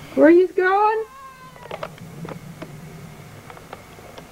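A cat meowing: one loud call, rising at its start and broken into two parts, lasting about a second, followed by a few faint clicks.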